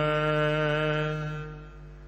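A voice chanting Gurbani holds the last syllable of a line on one steady note, then fades out about a second and a half in.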